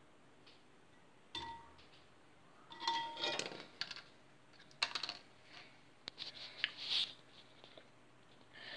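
A microwave-shrunken foil crisp packet being handled: a bump about a second in, crinkling around three seconds in, then a run of sharp clicks and taps.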